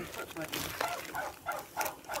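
Quiet, indistinct speech with no other clear sound.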